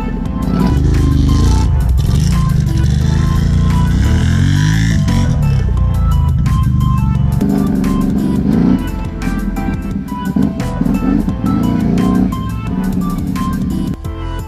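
Electronic background music with a steady beat, over an ATV engine that revs up and down.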